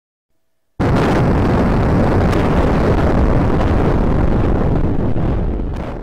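An explosion: a sudden blast about a second in, followed by a long rumble that fades near the end.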